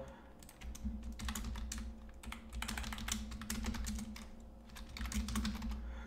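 Typing on a computer keyboard: a run of irregular keystrokes entering a short phrase.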